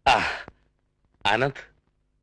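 Two short bursts of a person's voice, about a second apart, each with a falling pitch: brief non-word exclamations rather than sentences.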